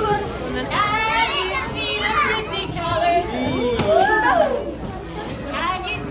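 Many young children's voices shouting and squealing at once, with high gliding calls that peak about a second in and again about four seconds in.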